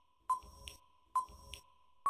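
Countdown timer sound effect: two short electronic beeps about a second apart, each with a sharp start and a brief ring, marking off the seconds.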